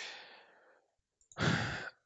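A man's breathing close to a headset microphone: a sigh-like breath fading out in the first half-second, then silence, then a short breath in about a second and a half in, just before he speaks again.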